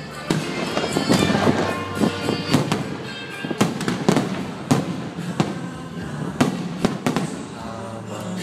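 Aerial firework shells bursting overhead: a dozen or so sharp bangs at irregular spacing, about one or two a second. Music plays underneath throughout.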